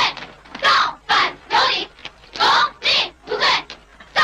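A column of uniformed young marchers chanting slogans in Chinese in unison, loud shouted syllables in a steady rhythm of about two a second.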